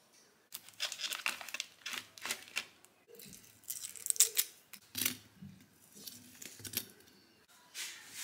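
Foil wrapper of a Laughing Cow cheese triangle being peeled open and crinkled by hand, in an irregular run of crackly rustles.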